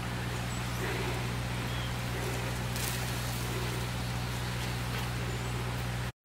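Steady low hum of a generator running, with faint outdoor background noise over it.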